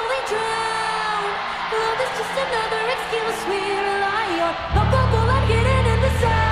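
Live rock band playing: sustained, wavering melodic lines of singing over guitar, with heavy bass and drums coming in strongly just before five seconds in.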